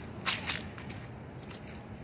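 Footsteps crunching on a sidewalk scattered with dry leaves: a few sharp steps in the first second, then fainter ones, over steady low outdoor background noise.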